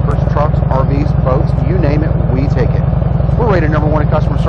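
Harley-Davidson 96 cubic inch V-twin idling steadily through Rush slip-on mufflers: an even low rumble of quick pulses, under a woman's speaking voice.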